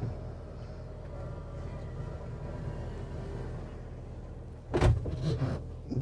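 Van's power sliding side door running on its motor, then thudding shut about five seconds in. A steady low hum runs underneath.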